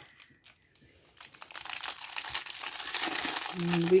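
Thin clear plastic bag crinkling as it is handled and opened. The crinkling starts about a second in and grows louder.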